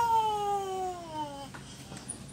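One long high-pitched call that glides steadily down in pitch for about a second and a half, then fades.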